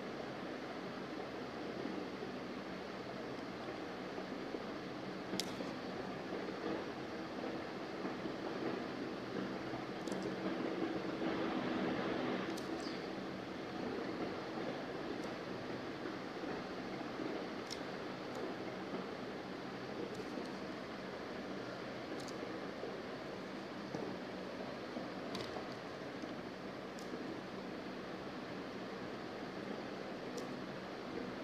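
Steady background hiss with a faint low hum, a room tone with a few faint soft ticks scattered through it.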